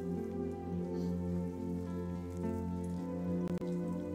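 Slow instrumental background music of long, held chords. About three and a half seconds in, the sound briefly drops out with a couple of clicks.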